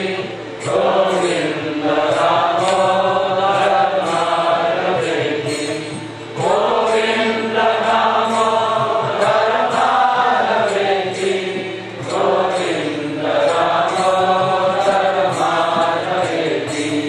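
Devotional Vaishnava chanting: a voice sings a slow kirtan melody in three long held phrases of about six seconds each, the pitch gliding up and down, with a faint regular ticking beat above it.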